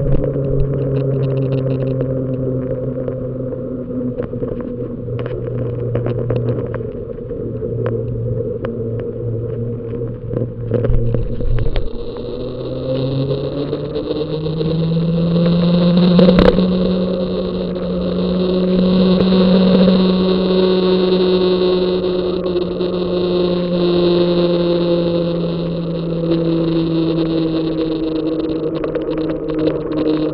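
Riding noise from a bicycle on an asphalt lane: a steady humming drone that rises in pitch about twelve to fifteen seconds in and then slowly settles, with frequent small knocks from bumps in the road surface.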